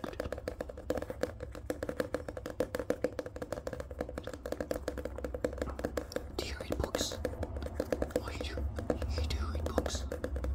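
Pages of a paperback manga volume riffled by thumb and fingers: a fast, continuous run of paper flicks.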